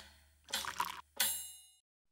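Intro animation sound effects: a couple of short soft sounds about half a second in, then a bright chime with high ringing overtones that stops abruptly a little before the end.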